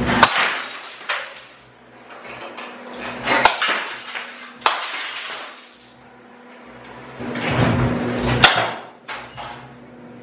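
Glassware and ceramic mugs being smashed with a bat: about five sharp crashes spread across the few seconds, each followed by the tinkle of breaking glass and shards.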